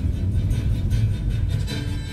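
Music from the car radio between news items, over the steady low rumble of a car driving on the road, heard inside the cabin.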